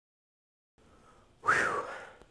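Silence, then faint room tone, and about a second and a half in a short breathy vocal sound from a man, its pitch rising then falling like a brief whistle or 'whew', fading within half a second.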